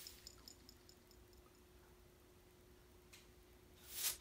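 Near silence, with a short row of faint ticks in the first second or so and a faint steady hum.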